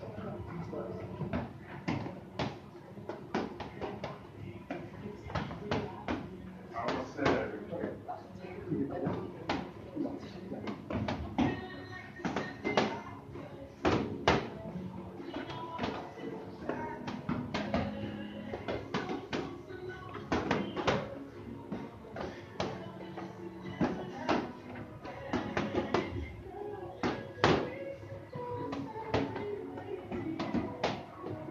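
Boxing gloves landing punches in partner drills: irregular sharp smacks, several a second at times, over background music and voices.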